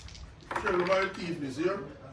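A person's voice calling out, starting about half a second in, with no clear words.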